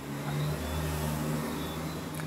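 A low, steady motor or engine hum.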